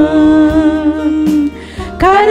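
A woman singing a worship song into a microphone, holding one long steady note that fades out about a second and a half in, then starting a new note at the end.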